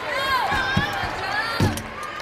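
Two dull thuds about a second apart as a gymnast lands on a balance beam during a flight series into a layout, the second thud the louder. Arena crowd voices fill the background.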